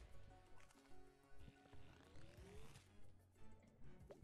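Faint online slot game music with a steady pulse about twice a second and a rising tone in the middle, playing while the bonus feature is randomly selected.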